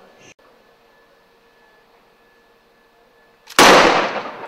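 Fast-draw revolver gunfire: after a quiet wait, a sharp, loud shot comes about three and a half seconds in and rings on briefly.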